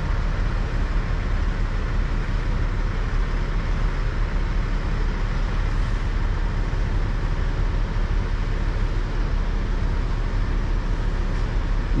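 Grove mobile crane's diesel engine running steadily, holding a suspended chiller on the hook.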